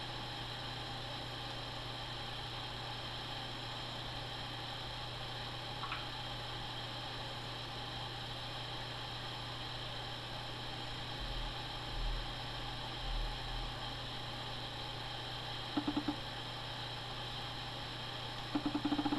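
Steady electrical hum and hiss of room tone, with a faint click about six seconds in and a few short buzzing pulses near the end.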